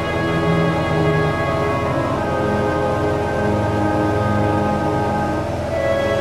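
Background music of sustained, layered chords, with a change of chord near the end.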